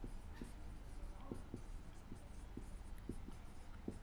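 Marker pen writing on a whiteboard: a faint, irregular run of short strokes.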